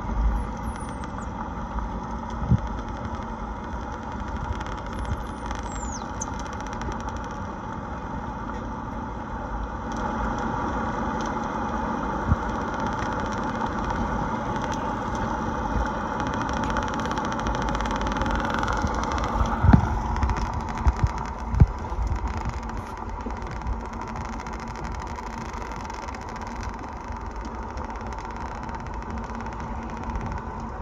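Underwater hydrophone audio played through a small portable speaker: a steady engine drone, with a few faint, high, falling dolphin whistles in the first second and again about six seconds in. Occasional single clicks, the loudest about twenty seconds in.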